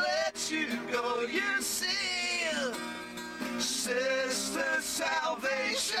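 Acoustic guitars playing under a man's singing voice that slides freely in pitch, with a long falling slide about two seconds in.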